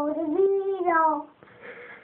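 A toddler singing, holding a long wavering note that bends up and down, then stopping about two-thirds of the way in.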